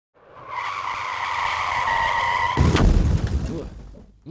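Car tires screeching steadily for about two seconds, then cut off by a loud crash whose low rumble fades over the next second: a skid-and-crash sound effect.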